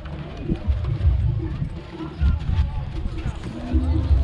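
Low, uneven thumps and rumble picked up by a body-worn action camera on a rider whose horse is walking, with faint voices in the background.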